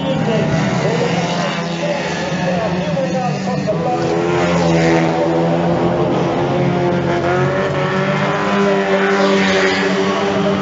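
Banger racing cars' engines running hard as they race round a dirt oval, the engine note rising and falling as the drivers accelerate.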